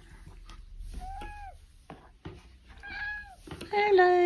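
Domestic cat meowing three times: a short call about a second in, another around three seconds, and a longer, louder one near the end.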